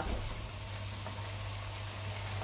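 Diced leeks, potatoes and onion sizzling gently as they fry in oil and butter in a frying pan.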